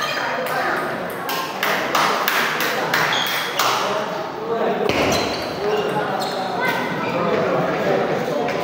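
Table tennis balls clicking irregularly off tables and bats, over the chatter of people in a large hall.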